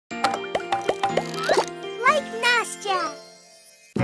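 Short children's intro jingle: quick plucked and popping notes with a child's voice in sliding, playful tones, fading out in the last half second.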